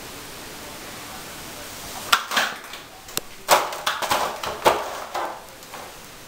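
A series of sharp knocks and clatters, starting about two seconds in and ending about five seconds in, over a steady hiss.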